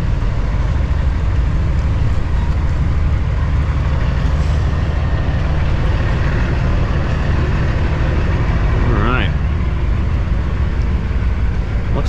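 Cummins ISX diesel engine of a 2008 Kenworth W900L semi running steadily at low revs, a constant low drone heard from inside the cab as the truck creeps up to the fuel pump.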